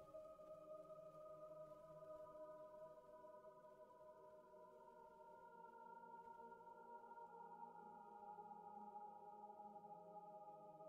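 Near silence with a faint ambient music drone: several soft tones held steady throughout.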